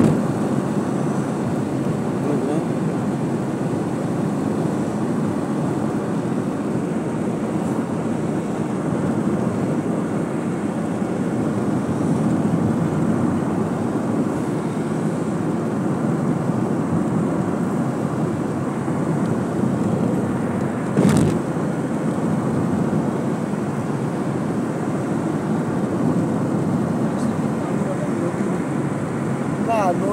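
Steady road and engine noise of a car cruising on a highway, heard from inside the cabin. One brief knock about two-thirds of the way through.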